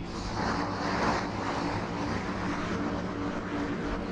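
A steady low mechanical hum with a rumbling noise, as from a motor or engine running.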